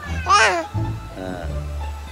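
A young child's short, high-pitched squeal, rising and falling once about a third of a second in.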